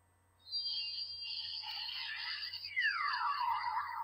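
Pokémon Sun and Moon Z-Ring toy playing its electronic Z-move effect: high warbling electronic tones starting about half a second in, with a pitch sweep falling steeply near the three-second mark.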